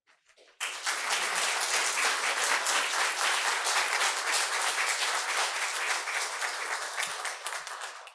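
Audience applauding in a hall, a dense patter of many hands that starts abruptly about half a second in and keeps up steadily until it cuts off at the very end.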